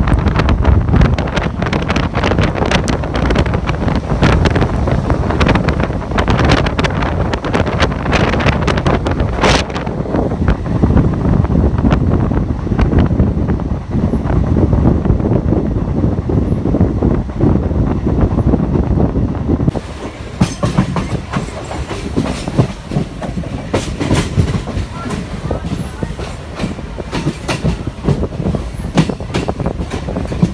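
MEMU electric passenger train running, heard from its open doorway: a steady rumble with wheels clacking over rail joints. About twenty seconds in the noise drops, and the clacks become sparser and more distinct.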